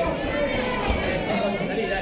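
Spectators' chatter: many voices talking and calling at once, overlapping.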